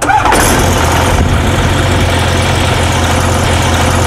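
A light aircraft's Rotax 912 flat-four engine and propeller running steadily at low power on the ground: a loud, even drone with a deep hum.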